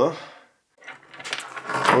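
A man talking, with a short pause of about half a second in the middle.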